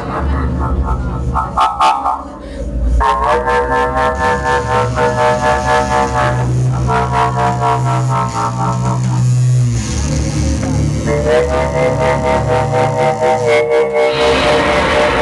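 A live noise-rock band playing loud, distorted droning tones over a deep bass drone, with fast pulsing clicks running through it. The sound drops away briefly about two seconds in, then the stacked tones come back in.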